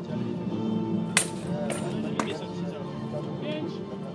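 Sharp metallic clangs of one-handed swords striking shields and plate armour: three hits, the loudest about a second in, over background music and crowd voices.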